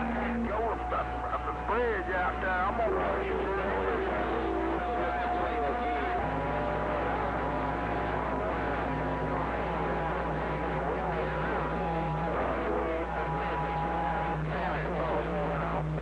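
Received audio from a Yaesu FT-2000D HF transceiver on a crowded long-distance channel. Several stations are keying over one another, making garbled voices, steady heterodyne tones at different pitches that come and go, and warbling whistle-like tones, all over a low steady hum.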